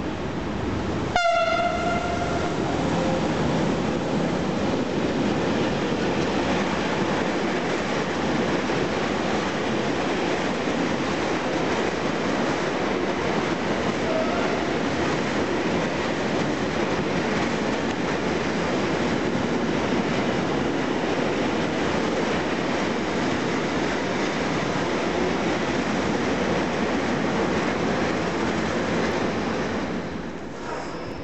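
Electric locomotive hauling a freight train sounds one short horn blast about a second in. Then a long rake of sliding-wall boxcars rolls past, with a steady, loud rumble of wheels on the rails.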